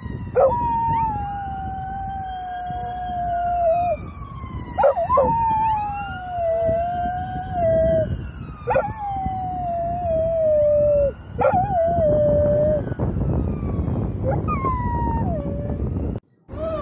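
A dog howling: about five long howls, each starting with a quick rise and then sliding slowly down in pitch, the last one short.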